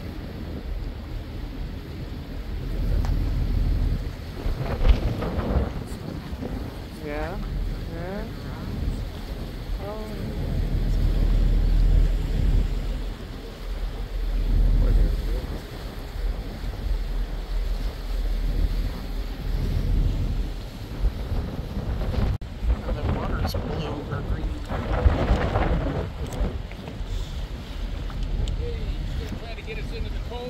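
Wind buffeting the microphone on a moving tour boat, over a steady low rumble from the boat's engine and the water.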